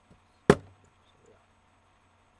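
A single sharp knock about half a second in, a hard object striking a hard surface, with a short fading tail.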